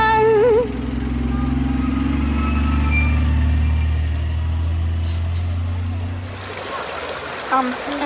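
Shuttle bus engine running with a steady low rumble that fades about six and a half seconds in, with a short hiss about five seconds in.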